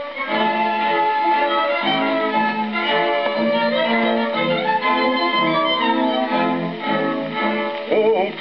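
Orchestra, led by bowed strings, playing an instrumental passage between sung verses, reproduced from a 78 rpm shellac record on a gramophone.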